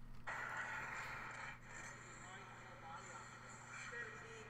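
Audio of a hockey training video starting to play back on a computer: faint ice-rink room noise with distant voices, over a steady low electrical hum.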